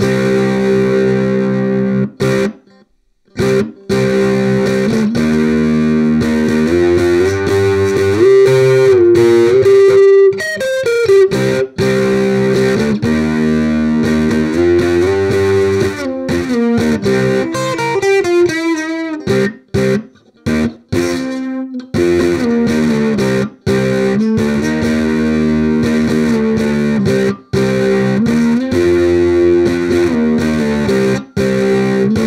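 Fanner Exosphere electric ukulele played through a Hughes & Kettner Spirit of Vintage nano amp head at full gain into a Barefaced One10 bass cabinet: distorted, sustained chords and riffs. A few notes are bent and wavered, and the playing cuts off briefly a couple of times near the start.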